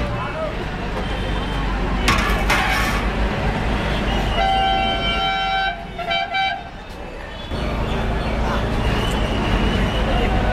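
A vehicle horn honks twice, about four and a half seconds in: a long honk of over a second, then a short one. Around it there is steady bus-station street noise with a low rumble, and a brief hiss about two seconds in.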